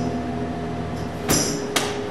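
Amplified electric guitars left ringing as a rock song ends, holding a couple of sustained notes that slowly fade. Two sharp knocks cut through near the end, under half a second apart.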